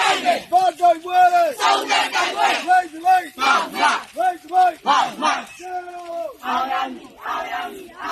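A crowd of marchers chanting protest slogans together in a steady rhythm, in short loud shouted phrases.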